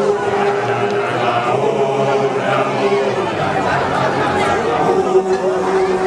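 A group of seated Basotho initiates (makoloane) chanting together, holding a long steady note that breaks off about a second in, returns, stops after about three seconds and comes back near the end.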